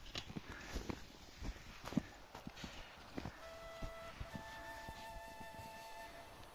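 Footsteps of hikers walking through deep snow, irregular soft steps. About halfway through, faint background music of long held notes comes in.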